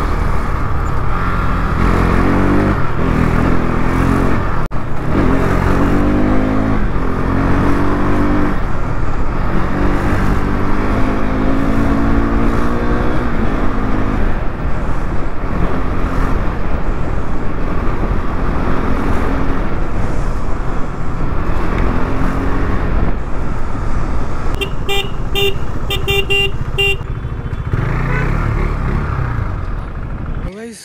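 KTM RC 390's single-cylinder engine pulling through the gears in traffic, its revs rising and dropping again and again, over a steady low rumble of wind and road. Near the end a horn beeps about half a dozen times in quick succession.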